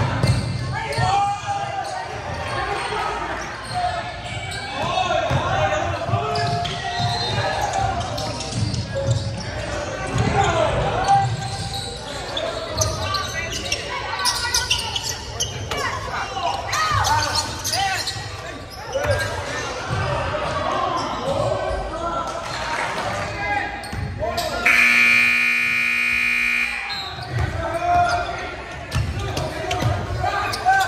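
Basketball dribbled and bouncing on a hardwood gym court, with players' and spectators' voices echoing in the hall. About 25 s in, the scoreboard buzzer sounds steadily for about two and a half seconds.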